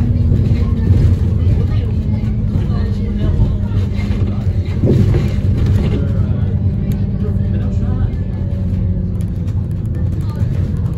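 City bus engine and drivetrain heard from inside the passenger saloon while the bus drives along: a steady low hum, with a short louder moment about halfway through.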